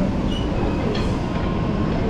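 Steady low rumble of a passing train, with a few faint high squeaks.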